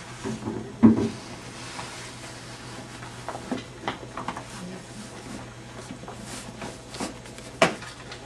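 Plastic clicks and knocks from an infant car seat carrier being handled and its carry handle worked, with two sharper knocks about a second in and near the end.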